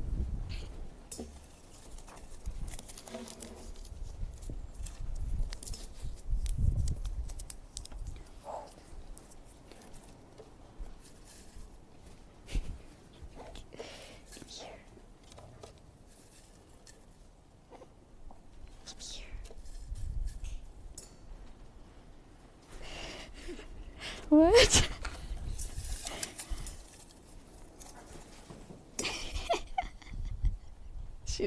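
Paper strips rustling and crinkling in a stainless steel bowl as an African grey parrot digs through them with its beak, foraging for hidden food. One short, louder sound with a wavering pitch about 24 seconds in.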